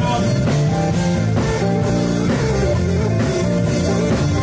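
Live church band playing an upbeat gospel groove, with electric guitar and a drum kit keeping a steady beat.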